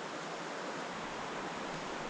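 Steady rush of flowing river water, an even hiss with no pauses.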